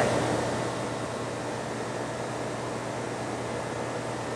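Steady hum and noise of running industrial plant machinery, with a constant low tone under an even hiss.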